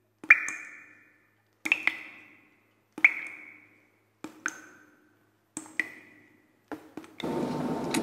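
A series of short ringing pings, about one every 1.3 seconds. Each is a sharp click with a high ring that quickly fades, as sound effects timed to animated on-screen text. Near the end a steady background hiss of room noise comes in.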